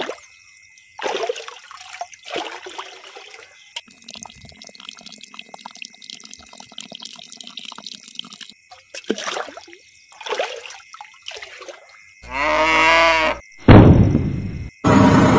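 Water poured from a small steel pot onto sand, splashing in a few short pours with a thinner trickle between them. Near the end a louder, pitched, wavering sound lasts about a second, followed by a sudden loud burst.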